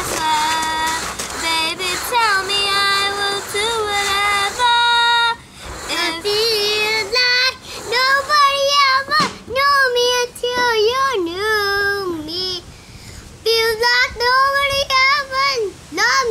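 Children singing a slow pop ballad unaccompanied, the melody held in long notes with short pauses between phrases.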